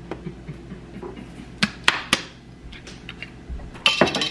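Kitchen utensils clinking and knocking: three sharp clicks close together in the middle and another near the end.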